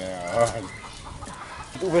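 A man's voice: a short, wavering laughing exclamation at the start, a quiet gap, then another exclamation starting near the end.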